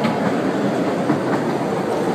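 Small park train running along its track, heard from an open-sided passenger car: a steady noise of wheels on the rails with faint scattered clicks.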